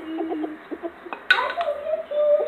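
A child's voice making wordless, playful vocal noises in short broken notes, with a louder burst just over a second in.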